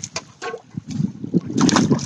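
Water splashing and sloshing at the lake edge as caught fish are let go from a bucket back into the water, with a louder splash near the end. Gusty wind buffets the microphone throughout.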